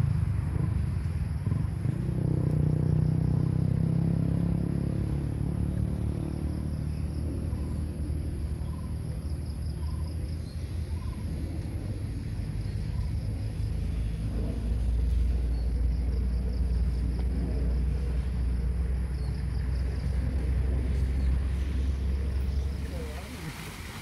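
A steady low rumble, heaviest in the bass, swelling a little twice.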